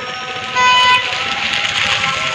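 A vehicle horn toots once for about half a second, over a background of street noise.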